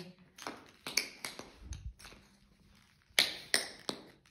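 Metal taps on tap shoes striking the floor: a run of light taps in the first second and a half, then three sharp, evenly spaced taps near the end.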